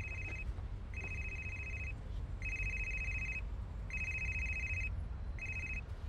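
Mobile phone ringing: a high, trilling ring about a second long, repeated five times with half-second gaps. The last ring is cut short near the end.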